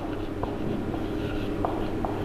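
Marker pen writing on a whiteboard, the tip scratching and giving a few short squeaks.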